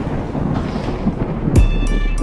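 Rumbling thunder sound effect from a logo intro, fading after a crash. About one and a half seconds in, a deep bass hit lands and holds as a low note, with music tones coming in over it.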